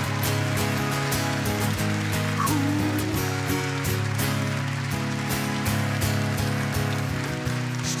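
Acoustic guitar strummed in a steady rhythm, playing an instrumental passage of a live song with no singing.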